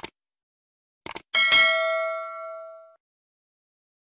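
Subscribe-button sound effect: a click at the start and a quick double click about a second in, then a single notification-bell ding that rings out and fades over about a second and a half.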